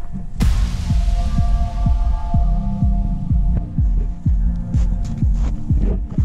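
Electronic dance music: a steady bass drum beating about twice a second under sustained synth chords, with a cymbal-like wash crashing in about half a second in and fading away.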